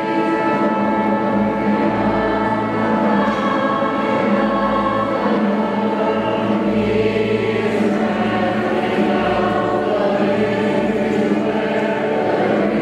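Choir singing sustained chords over instrumental accompaniment, with a low bass line moving every couple of seconds.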